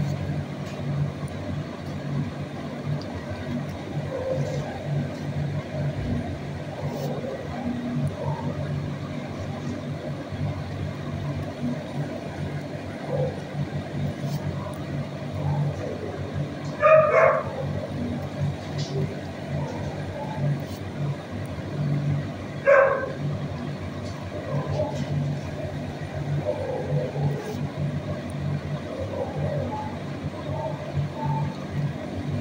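A dog barks twice, about six seconds apart, over a steady low hum.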